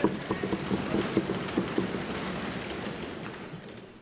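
Lok Sabha members thumping their desks in applause, with scattered voices calling out; the pattering dies away toward the end.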